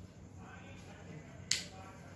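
A single sharp click about one and a half seconds in, over faint room tone.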